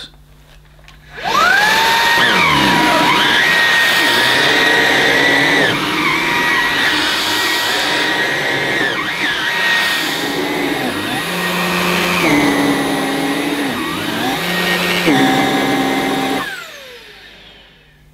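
Halo Capsule cordless stick vacuum with its motorised brush head switching on and whining up to speed, then running on thick plush carpet, its whine shifting in pitch as the head is worked back and forth; the head tends to lift and skip on the forward push. It winds down with a falling whine near the end.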